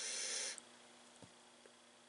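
A short airy hiss lasting about half a second, then a quiet stretch with a couple of faint light clicks as small engine parts are handled.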